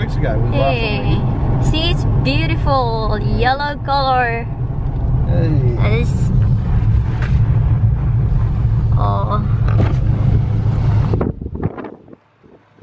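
Steady low rumble of road and engine noise inside a moving car's cabin, with people talking over it in bursts. The rumble cuts off suddenly near the end.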